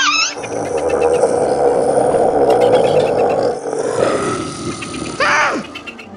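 Dinosaur roar sound effect for a T-Rex: a long, loud growling roar of about four and a half seconds, with a short high cry falling in pitch near the end.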